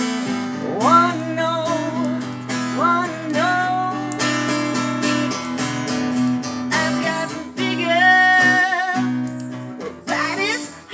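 Live music: a steel-string acoustic guitar strummed in a steady chordal pattern, with a woman's voice singing long wordless notes that slide up in pitch and are held.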